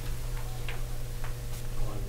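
Steady low room hum with a few light, irregular clicks, about five in two seconds.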